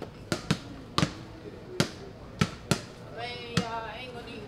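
Basketball dribbled on a hard polished floor: about eight sharp bounces at an uneven pace.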